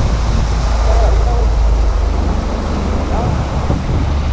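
Outboard motor of a small open skiff running at speed, a steady loud drone, with water from the wake rushing along the hull.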